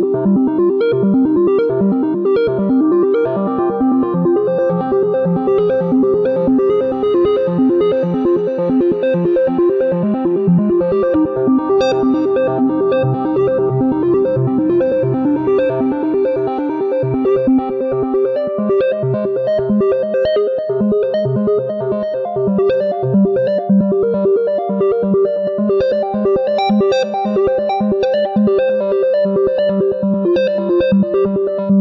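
Korg wavestate wave-sequencing synthesizer playing a fast, evenly pulsing sequenced pattern over sustained chords, the notes shifting about two-thirds of the way through.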